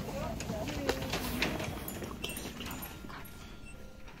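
Faint, wordless voices with light crinkling and clicking as plastic-packaged Christmas ornaments are handled.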